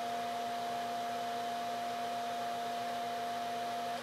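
Steady mid-pitched CW sidetone from an Icom IC-7300 transceiver, held while the rig is keyed into a Heathkit SB-200 linear amplifier so its tune and load controls can be peaked for maximum power out; the tone cuts off just before the end as the key is released. A steady low hum and hiss run beneath it.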